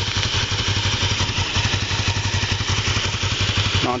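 Kawasaki Ninja 500R's parallel-twin engine idling steadily, a fast, even low pulse.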